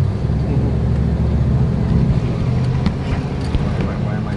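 1971 Ford Bronco's engine, heard from inside the cab, pulling away in first gear with a lot of throttle. The low engine drone grows a little louder around the middle, with a few light clicks near the end.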